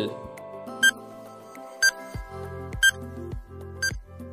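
Quiz countdown timer sounding a short, sharp beep once a second, four times, over background music; a low bass beat comes into the music about halfway through.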